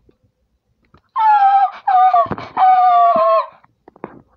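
A child's voice giving three high-pitched, drawn-out squeals, starting about a second in, each sliding slightly down in pitch, with a few light clicks between them.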